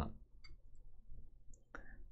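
A pause between a speaker's sentences, holding a faint short click about half a second in and a weaker one shortly before the voice returns near the end.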